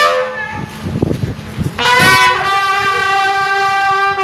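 Brass band music at an outdoor festival: after a short lull with low thumps, a horn holds one long, steady note from about two seconds in.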